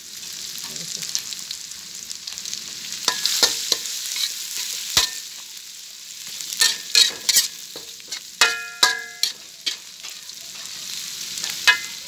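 Garlic and dried bird's eye chillies sizzling in hot oil in a metal wok, stirred with a metal spatula. The spatula scrapes and clanks against the wok several times, a few of the clanks ringing briefly.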